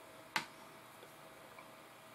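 A single sharp plastic click about a third of a second in as a small dropper bottle of hobby paint is handled, followed by a couple of faint ticks.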